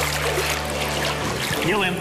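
Pool water splashing and sloshing around a man standing chest-deep, over background music that stops a little past halfway. A man starts speaking near the end.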